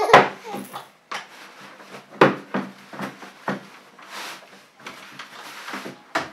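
Plastic clicks and knocks from a Leader Kids infant car-seat carrier as its carry handle and canopy are moved between positions. There are several sharp clicks; the loudest comes right at the start and another about two seconds in.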